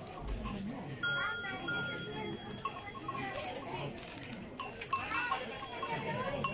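Sheep bleating, with the metal bell hung on a sheep's neck clinking and ringing several times as the animal moves its head.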